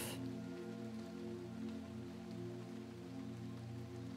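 Quiet, steady ambient sleep music: a sustained drone of held low tones with no beat, over a faint soft hiss.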